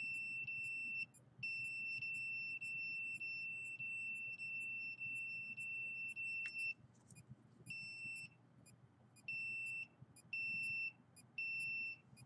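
Handheld EMF/RF meter's alarm beeping: one high steady tone, held for about a second, then for about five seconds, then broken into short beeps of about half a second in the second half, with a faint fast ticking underneath.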